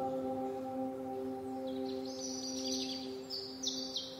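Soft ambient relaxation music: a held chord of bell-like tones, slowly fading. Faint high chirps come in during the second half.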